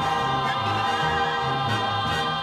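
Choir singing long held chords over an orchestral accompaniment with a moving bass line.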